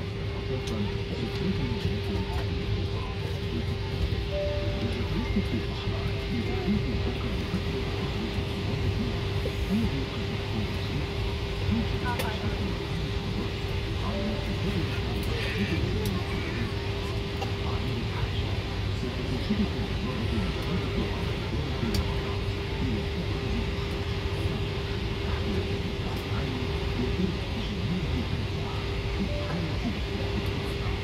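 Steady aircraft cabin hum with one constant droning tone, under the safety video's narration and soft background music playing from the cabin speakers.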